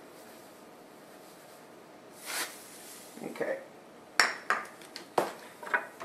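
Table salt tipped from a measuring cup into a glass mixing bowl of flour, a short rushing pour about two seconds in. Then several sharp clicks and knocks as the measuring cup and the salt canister are set down on a tiled counter.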